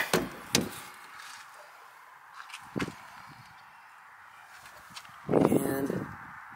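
A few sharp clicks and a knock over a faint steady hiss, then a brief man's voice near the end.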